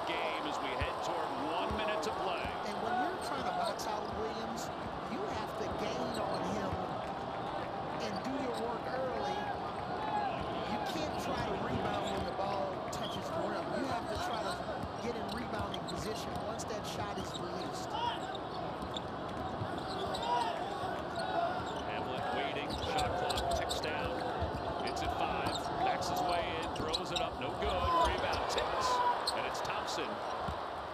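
A basketball bouncing on a hardwood court during live play, with players and coaches calling out. The arena is nearly empty, so there is no crowd noise over the court sounds.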